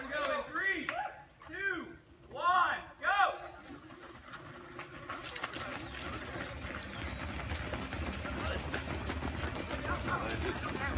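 A voice calls out several times in the first three seconds. Then the footsteps of a large group of runners on asphalt and gravel build up, a dense patter that grows louder as the pack passes close.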